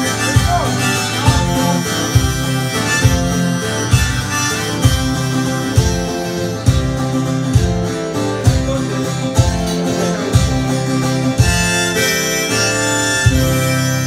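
Live harmonica and acoustic guitar instrumental, the harmonica carrying the melody in long held notes over steady strumming with a regular beat a little under once a second.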